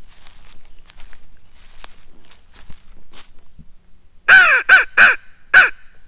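Crow call blown by mouth as a turkey-hunting locator call: four loud, harsh caws in quick succession about four seconds in, the first the longest, sounded to make a gobbler answer.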